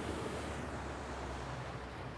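Boat motor running with a steady low hum, under a wash of wind and water noise.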